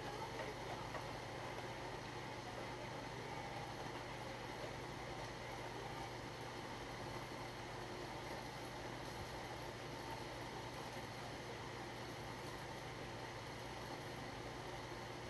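Steady low hum and faint hiss of room tone, with quiet chewing and a few soft chopstick taps near the start.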